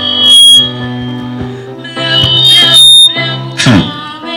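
Girl singing solo into a handheld microphone over sustained electronic keyboard accompaniment, amplified through a PA. Twice the sound peaks very loud and clips, with a shrill high tone on top.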